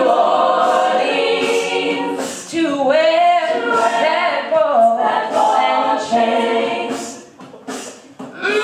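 Women's a cappella group singing in layered harmony with no instruments, a lead voice over the backing voices. The singing drops to a brief lull near the end.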